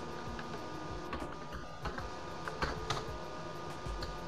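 Computer keyboard keys being typed: a handful of separate keystrokes over a faint, steady background hum.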